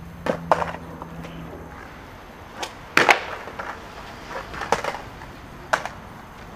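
Skateboard deck and wheels knocking and clattering on concrete. There are two light knocks within the first second, a loud smack about three seconds in, and a few more clacks near the end.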